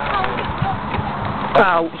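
A few dull low thumps in quick succession, then a burst of laughter and a cry of "ow" near the end.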